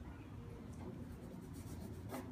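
Pen scratching across paper as a signature is written, in faint strokes that come more thickly near the end, over a low room hum.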